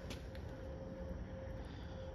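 Quiet room tone: a faint, steady low hum with a thin steady tone above it and no distinct events.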